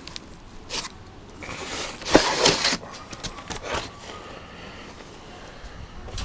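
Cardboard boxes being handled and shifted, with scraping and rustling in several short bursts, the loudest about two seconds in.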